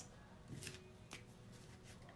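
Near silence: room tone with a few faint, brief rustles or taps of handling, about three of them.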